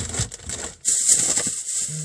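Plastic packaging crinkling and rustling as store products are handled, getting louder and denser about a second in.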